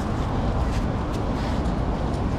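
Steady outdoor street ambience: a low, even rumble of traffic on the road beside the walkway.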